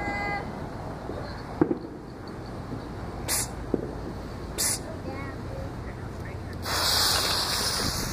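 Firework fuse being lit with a punk stick: a sharp click, then two short hisses as the fuse sputters, then from about seven seconds in a loud steady hiss as the fuse catches and burns.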